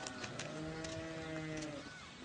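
A single long, low animal call, held for about a second and a half and dropping slightly in pitch as it ends.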